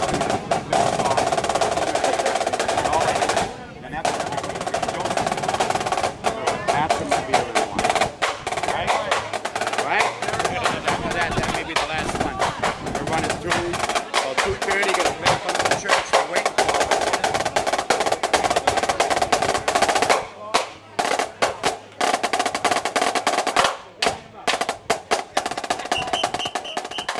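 A drum corps snare line playing a fast cadence on marching snare drums, with dense rapid strokes and rolls. The playing breaks off briefly about four seconds in and twice near the end.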